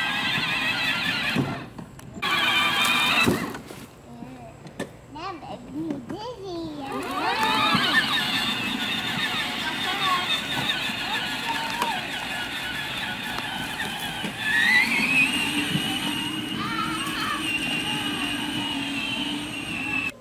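Battery-powered ride-on toy UTV driving, its electric motors whining steadily with a rise in pitch about two-thirds of the way through, along with children's voices.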